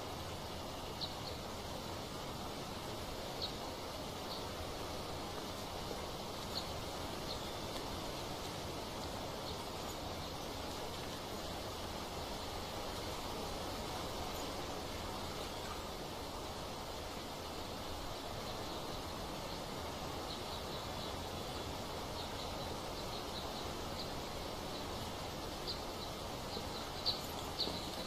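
Forest ambience: a steady rush of falling water with short, high bird chirps here and there, coming more often near the end.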